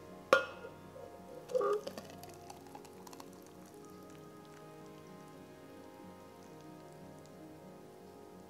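A thick fruit smoothie being poured from a blender jar into a stainless-steel tumbler: a sharp knock just after the start and a ringing clunk about a second and a half in, then soft dribbling and splatter. Steady background music runs underneath.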